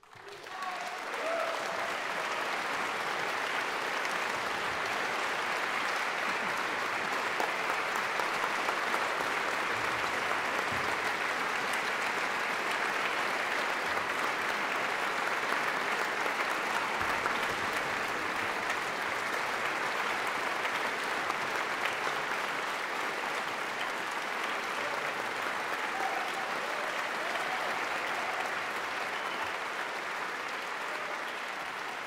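A large concert-hall audience applauding. The applause breaks out suddenly, swells to full strength within about a second and a half, and then holds steady.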